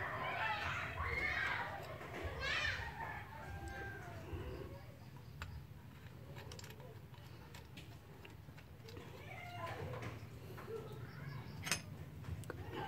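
Faint distant voices, children's among them, over a steady low hum, with one sharp click near the end.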